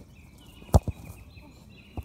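A single loud thud about three-quarters of a second in, followed at once by a fainter knock, over birds chirping in the background.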